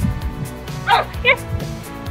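German Shepherd puppy giving two short, high yips a fraction of a second apart, about a second in, over background music.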